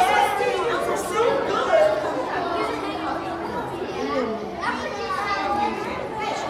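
Overlapping chatter of several people talking at once, children's voices among them, with no single voice clear.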